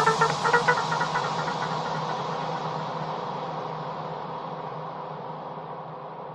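The closing tail of an electro house track fading out: a wash of reverb and hiss dying away steadily, with a few short synth notes stepping upward in the first second.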